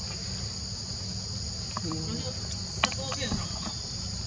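Steady, high-pitched drone of a forest insect chorus, with a few short calls or voices and a single click in the middle.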